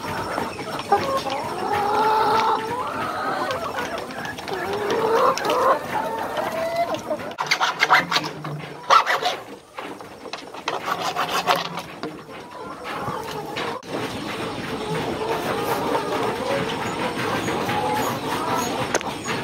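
Chickens clucking and calling, with a stretch of rapid clicks and knocks around the middle.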